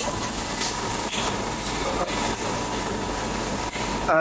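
Laser glass-cutting machine running with a steady hum and hiss and a faint high tone, as its gantry moves the cutting head across the glass sheet.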